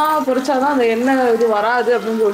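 A person's voice, continuous and gliding in pitch, over the sizzle of oil frying in a kadai.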